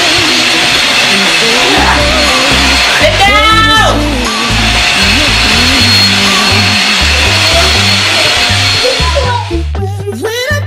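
Corded stick vacuum cleaner running steadily with a high motor whine as it is pushed back and forth over a rug, under background music with a singer. The vacuum noise drops away near the end.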